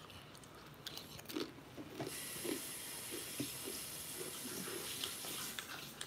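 A person chewing a pretzel with queso dip, with soft crunches and mouth sounds. From about two seconds in, a steady hiss runs until shortly before the end.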